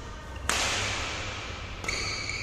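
A sharp crack of a badminton racket hitting a shuttlecock about half a second in, with the hall's echo trailing after it. Near the end a high, steady squeal starts.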